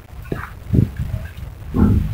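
Metal spoon stirring a thick multani mitti (fuller's earth) paste in a ceramic bowl: a few short, low strokes, the loudest near the end.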